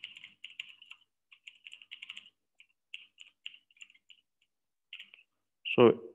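Typing on a computer keyboard: a run of light, irregular key clicks, with short pauses between bursts, stopping about five seconds in.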